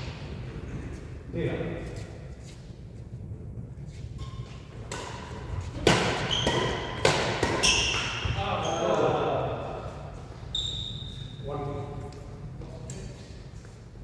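Badminton rally: rackets striking the shuttlecock several times in quick succession, the loudest hits about six and seven seconds in, with short squeaks of court shoes on the hall floor and the ring of a large hall.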